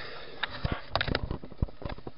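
Camera handling noise: an irregular string of short clicks and knocks as the handheld camera is swung around, mixed with short breathy sniffs.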